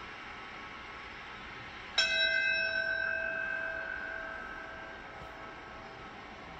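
A ceremonial brass bell struck once, about two seconds in, ringing and fading away over about three seconds. It is tolled to mark the start of the moment of silence. It is heard through a television's speaker.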